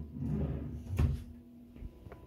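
Wooden sliding wardrobe door being moved: a low rumble, then one sharp knock about a second in.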